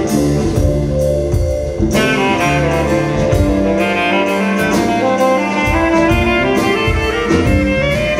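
Live soul/R&B band playing an instrumental passage, with saxophone and trumpet over keyboard, electric guitar, bass and drum kit. The low end thins out for a few seconds midway before the full band comes back in.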